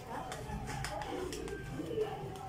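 A bird calling, with people talking in the background.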